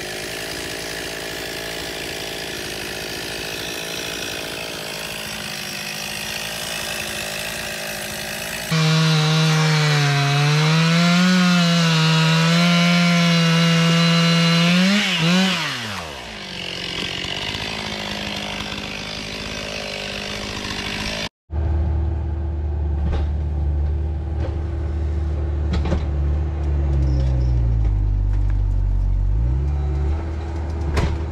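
Gasoline chainsaw running, then revved up loud into a cut for about six seconds, its pitch wavering under load before it falls back to a quieter idle. After an abrupt break near the end, a different, deeper steady hum takes over.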